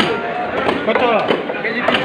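Knife chopping through a large fish at a market cutting board, a few sharp knocks amid people talking.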